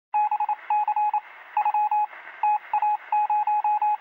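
Electronic beep tone keyed on and off in quick groups of short and longer pulses, like Morse code.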